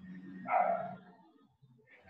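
A single short dog bark about half a second in, fainter than the voices.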